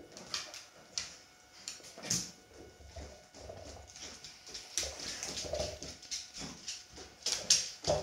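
A Dalmatian mouthing and chewing a hard treat-dispensing dog toy on a tiled floor, nosing at the biscuit crumbs spilled from it. The sound is a string of irregular soft mouth noises with scattered short knocks.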